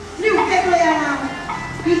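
A Taiwanese opera (gezaixi) performer singing through a microphone and PA, a long wavering vocal line that starts just after the beginning.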